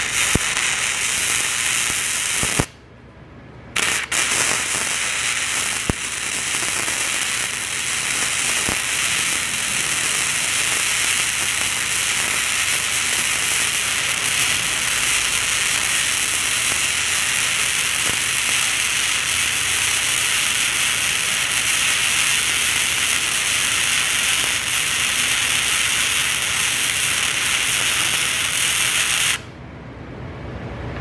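Flux-core wire welding arc from a Harbor Freight Titanium Easy Flux 125 welder, laying a bead with a back-and-forth weave on clean, ground-bright steel plate. The arc runs steadily, breaks off for about a second around three seconds in, then restarts and runs until it stops just before the end.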